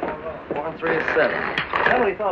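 People talking, with a brief click about one and a half seconds in.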